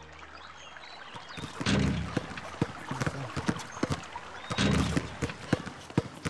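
Several basketballs bouncing on an outdoor court, a rapid, irregular patter of thuds, with two louder thuds about a second and a half in and near five seconds in.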